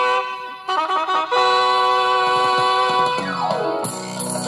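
Music played from a cassette on a Sharp GF-4500 boombox, heard through its speakers: held keyboard chords, then all the notes slide down in pitch about three seconds in before a new rhythmic passage begins near the end.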